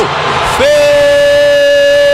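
A sports commentator's long, drawn-out shout held on one steady pitch, starting about half a second in after a short breath, over the noise of a crowd in a gymnasium.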